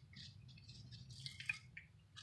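Faint, scattered small rattles and squeaks as a spice shaker is shaken over a raw pork chop and disposable-gloved hands handle the meat.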